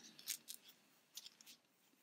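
Faint, brief rustles and crackles of polyester fibrefill being pulled from a tuft and pushed into a small crocheted amigurumi body, a few soft bursts near the start and again around the middle.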